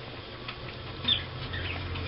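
Faint rustling and handling noise as a small fabric blanket and craft materials are moved about by hand, over a low steady hum that grows a little stronger about a second in.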